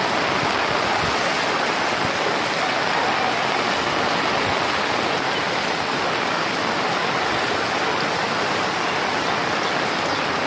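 Fast-flowing floodwater rushing over a road, a steady, unbroken rush of water.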